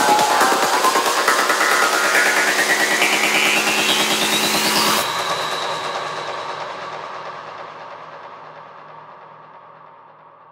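Electronic trance music building up with a rising sweep over sustained chords. The music stops abruptly about halfway through and dies away in a long fading tail.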